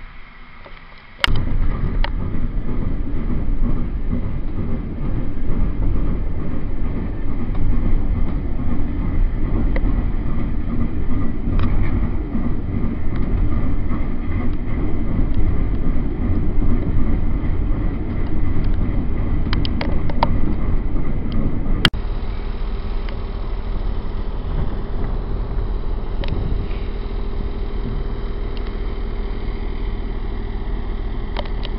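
Moving train heard from inside a passenger carriage: a loud, steady rumble of wheels and running noise that starts suddenly about a second in. About two-thirds of the way through it cuts abruptly to a quieter, steadier hum with one held tone.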